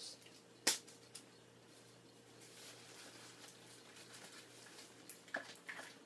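Faint handling noises of items being taken out of a backpack: one sharp click a little under a second in, then light rustling and a few small clicks near the end as a pair of earbud headphones is pulled out.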